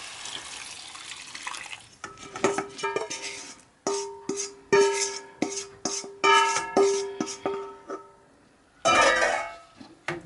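Stock being poured into a hot pan of vegetables, which hiss briefly at first. Then plucked-string background music plays with repeated struck notes, and near the end there is a short burst of noise from the pan.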